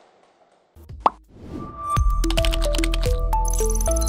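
Closing station jingle. After a short hush, a brief sound effect with one sharp hit comes about a second in. Then music with a steady beat and a held-note melody starts at full level about two seconds in.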